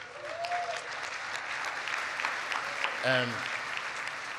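Crowd applause that swells in the first half second and then holds steady, with one short call from someone in the crowd near the start.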